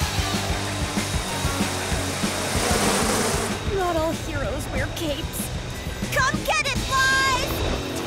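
Cartoon soundtrack: background music under a dense rushing noise for the first three or so seconds, then voices calling out with sliding pitch over the music.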